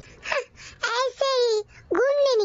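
A cartoon character's voice making a few short high vocal sounds, with pitch sliding up and down.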